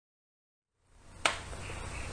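Dead silence that gives way to faint room tone with a low hum, broken by a single sharp click about a second in.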